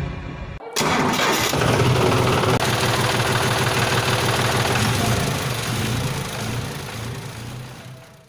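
An engine sound effect, most likely a tractor's, cranking and catching about a second in. It then runs with a steady pulsing idle and fades out near the end, mixed with outro music.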